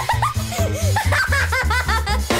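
Bouncy cartoon music with a steady bass beat, and a young girl's high giggling over it in quick repeated bursts that climb in pitch toward the end.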